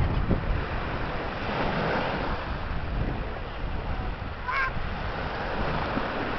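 Small Baltic Sea waves washing onto a sandy beach, with wind buffeting the microphone in a low rumble. A short high call sounds once, about four and a half seconds in.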